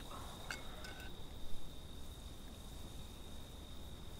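Crickets trilling in one steady, unbroken high tone over a faint low rumble of night air. A few faint short chirps or clicks come in the first second or so.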